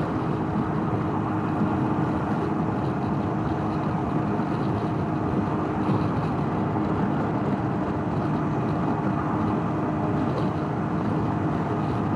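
Can-Am Ryker Rally three-wheeler cruising at highway speed: a steady drone from its three-cylinder engine mixed with wind and road noise, unchanging throughout.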